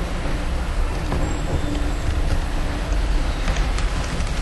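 Steady low background rumble with hiss, with a few faint clicks near the end.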